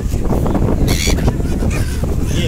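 A gull gives one short, harsh call about a second in, over the steady low rumble of a ferry under way.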